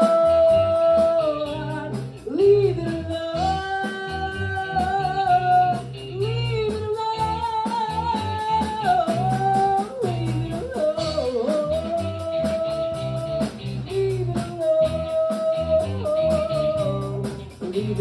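Live rock band playing: a man singing long held notes into a microphone over an electric guitar and a drum kit.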